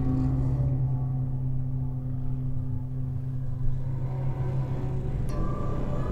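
Dark ambient horror background music: a low, steady droning pad, with higher ringing tones joining near the end.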